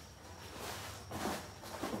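Cardboard and plastic packaging rustling and scraping as it is handled by hand, loudest from about half a second to just past the middle.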